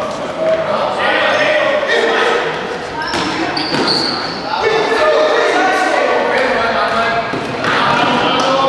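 Futsal ball being kicked and bouncing on a wooden sports-hall floor, with players' voices calling out, all echoing in the large hall.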